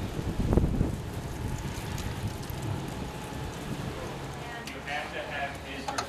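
Wind buffeting a handheld camera's microphone, loudest in the first second, then a steady low rumble; faint, indistinct voices come in from about four and a half seconds.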